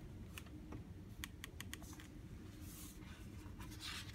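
A hardcover picture book being handled: a handful of light clicks, then soft paper rustles as a page is turned near the end.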